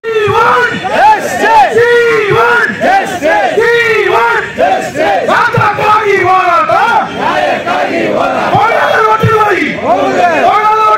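A crowd of protesters shouting slogans together: many loud voices at once in repeated rising-and-falling calls. They start abruptly and keep going throughout.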